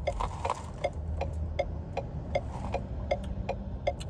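A car's turn-signal indicator ticking steadily, about two and a half clicks a second, with a low rumble underneath.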